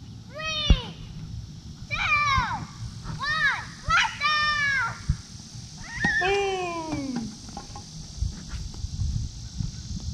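A young child's high voice calling out in drawn-out, sing-song words, about six calls in all, the last a long falling one: counting aloud for a toy rocket launch.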